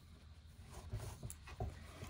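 Faint handling sounds: T-shirt yarn being drawn through crochet stitches and the crocheted basket being turned in the hands, a few soft rustles and light knocks about a second in, over a low steady hum.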